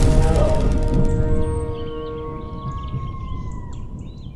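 Logo sting music: the low rumble of a deep hit fades away under held synth tones. Short bird-like chirps come in after about a second and a half as the whole sting dies down.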